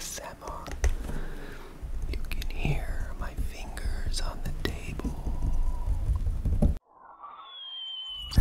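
A man whispering close into a USB condenser microphone, with a low rumble picked up at close range. It cuts off abruptly about three-quarters of the way through, giving way to a short electronic intro sound effect with a high sliding whistle-like tone.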